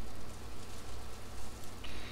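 Steady low hiss with a faint hum underneath: the background noise of a desk microphone during a pause, with no distinct event.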